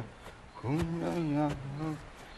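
A man humming a wordless tune: one long, wavering note held for about a second and a half, starting about half a second in.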